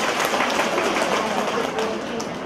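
A congregation applauding, many hands clapping at once, with voices underneath.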